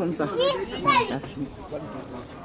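A high-pitched voice calls out twice in the first second, its pitch sweeping up and down, then fades into quieter background chatter.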